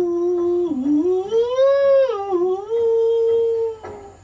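A Khasi villager's full name-tune, the sung name given to each person in Kongthong, voiced as a single wordless melodic line without a break. The pitch dips early on, rises to a high point about halfway through, dips again, then holds steady before stopping just short of four seconds.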